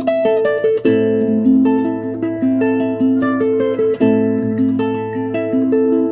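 Instrumental intro of a rock-pop song: a plucked guitar picking a repeating pattern of single notes that ring over one another, with no vocals.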